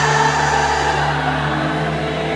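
Live band music holding a sustained chord, with no singing over it, under the steady noise of a large crowd.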